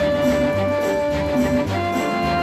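Latin dance orchestra music played from a 1958 stereo LP: a long held note that ends shortly before the close, over a steady bass beat.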